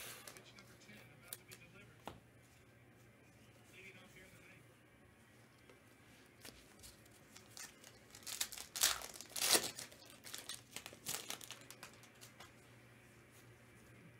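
A trading-card pack wrapper being torn open and crinkled by hand. After a quiet stretch, a burst of tearing and rustling starts about eight seconds in and lasts some three seconds.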